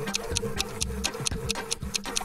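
Stopwatch ticking sound effect, rapid, even ticks, over background music.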